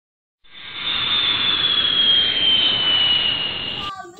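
An edited-in whoosh sound effect: a rush of noise with a high whistle that slowly falls in pitch. It starts about half a second in and cuts off suddenly just before the end.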